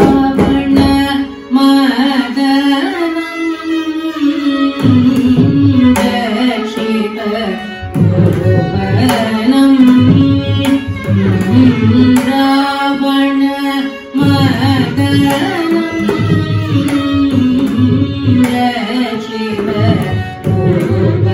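Carnatic classical music: a woman singing a kriti in raga Abheri to Adi tala, shadowed by violin, with mridangam strokes coming in about five seconds in and continuing with short breaks.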